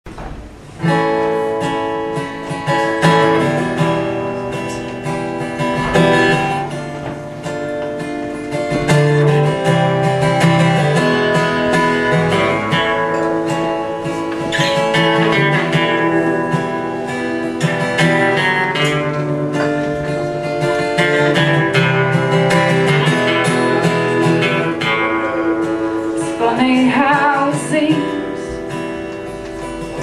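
Two acoustic guitars playing an instrumental introduction together, strummed chords in a steady rhythm, starting just under a second in.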